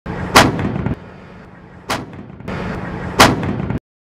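Three heavy tank-cannon shots about a second and a half apart, each a sharp blast with a short rumbling tail, over a steady low hum. The sound cuts off suddenly just before the end.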